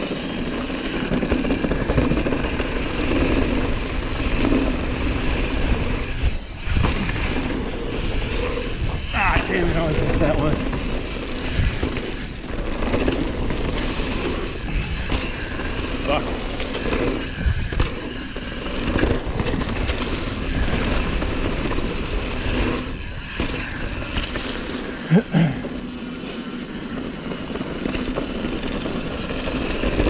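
Mountain bike riding a dirt singletrack: a steady rush of tyres over dirt and roots, wind noise, and frequent knocks and rattles from the bike over bumps. A brief falling squeal comes about nine seconds in.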